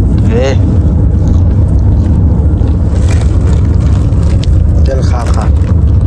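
Steady, loud low rumble of a car in motion, heard from inside the cabin, with two brief snatches of voice: one about half a second in, one near the end.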